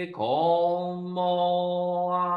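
A man chanting a Shin Buddhist sutra in Japanese, holding each syllable long on one steady pitch. The voice breaks briefly just after the start, and the next syllable slides up onto the note and is held.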